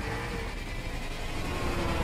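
Action-film car sound effects from a movie trailer: a steady rush of engine and road noise from many cars, growing a little louder near the end.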